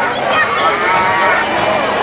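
One long cow-like moo from the cow-painted milk float as it passes, over voices of the crowd.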